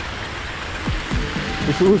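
Music playing over the steady rush of fountain jets splashing into a pool, with a voice starting near the end.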